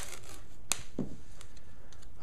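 Painter's tape being pulled off the roll and torn to length, with one sharp snap a little under a second in.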